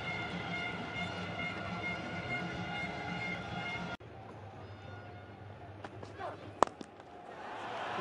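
Stadium crowd noise, cut off abruptly about halfway. After that comes the single sharp crack of a cricket bat striking the ball, a lofted shot that goes for four, and the crowd noise rises again near the end.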